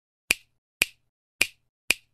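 Four sharp, snap-like clicks about half a second apart, each dying away quickly with silence between them: sound effects for an animated title.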